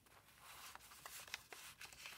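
Faint papery rustle of a card sliding down into a paper pocket of a handmade junk journal, with a couple of soft ticks.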